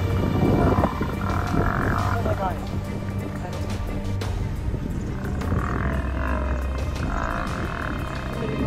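Music with steady sustained tones over the calls and growls of spotted hyenas and African wild dogs fighting, with bursts of higher-pitched wavering calls about a second in and again in the second half.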